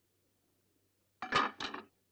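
Tableware clattering: a serving spoon and china dishes knocking together on a dinner table, two short clatters in quick succession about a second and a half in.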